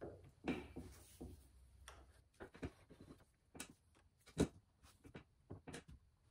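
Faint, scattered metal clicks and taps as a steel gib is worked into the dovetail of a lathe slide, with one louder knock about four and a half seconds in.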